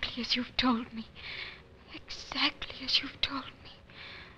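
Voices whispering in short, broken phrases.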